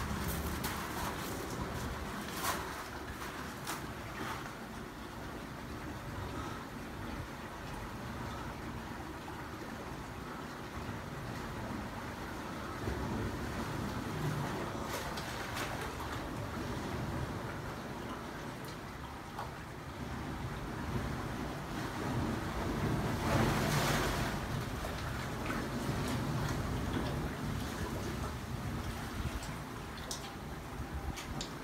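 Sea water washing and lapping through a narrow rock gully, with wind rumbling on the microphone. The wash swells louder about three-quarters of the way through.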